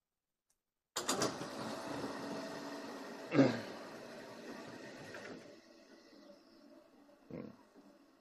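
A man clearing his throat about a second in, followed by a low "hmm" with falling pitch a little after three seconds, over a steady hum of room noise that fades after about five seconds.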